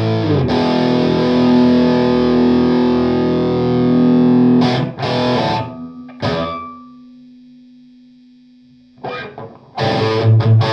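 Electric guitar played through an FJA-modified Marshall JMP 2203 valve head (SS Mod) and 4x12 cabinet, giving a distorted tone. A chord is held for about four seconds, then come a few short stabbed chords and a single low note left ringing and fading out, before chords start again near the end.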